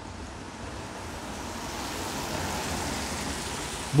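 Steady hiss of a wet city street in the rain, growing slowly louder.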